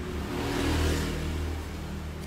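A steady low engine rumble with a hiss over it, swelling slightly about half a second to a second in.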